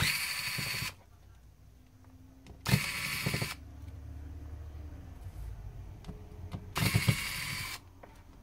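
Small electric screwdriver running in three short bursts of about a second each, backing out the tiny Phillips screws of a smartphone's back frame.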